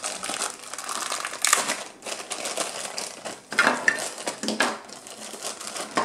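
Plastic bubble-wrap packaging crinkling and rustling in the hands as small toy furniture pieces are unwrapped, with a few louder crackles along the way.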